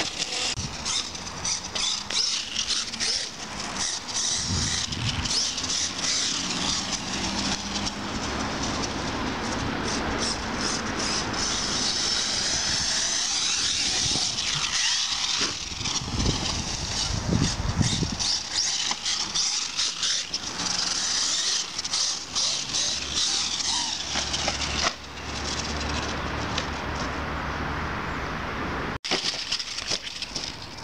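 HPI Savage Flux RC monster truck's brushless electric motor and drivetrain whining on a 6S LiPo pack, the high-pitched whine rising and falling in pitch over and over as the truck speeds up and slows.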